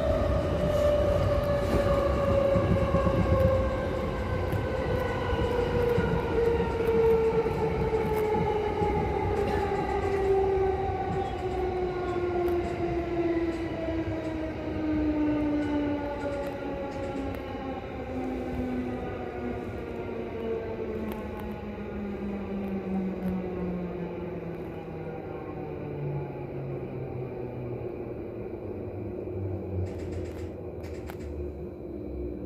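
Electric commuter train heard from inside the carriage: the traction motor whine falls slowly and steadily in pitch as the train slows, over the rumble of wheels on rail.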